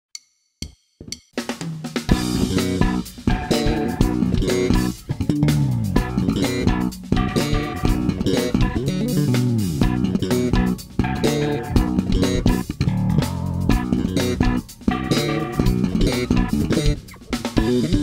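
Five-string Ibanez SR05 electric bass played solo through a Headrush pedalboard: fast runs with sharp, percussive note attacks, played partly two-handed tapping on the fretboard. The playing starts about a second and a half in, after a few short clicks.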